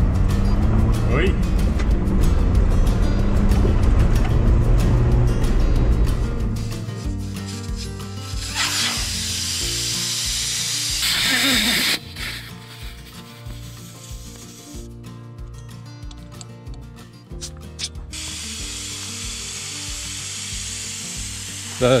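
For the first several seconds a vehicle rumbles along a gravel trail. Then, over background music with a steady beat, air hisses out of an off-road tyre's valve stem in short bursts as the tyre is aired down.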